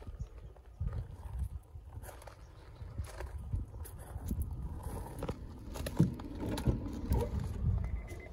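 Footsteps crunching on loose gravel, irregular steps and scuffs as someone walks slowly alongside a parked car, over a low rumble.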